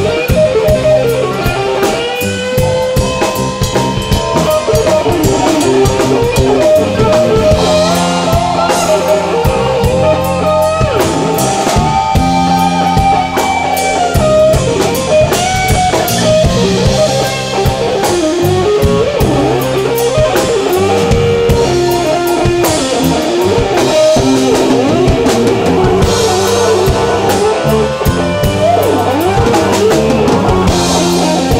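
Live blues band playing an instrumental passage, with drum kit and electric guitar to the fore and a lead line that bends up and down in pitch over a steady beat.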